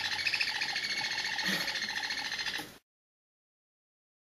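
Faint chirping of baby parrots over room sound, cutting off suddenly to silence a little under three seconds in.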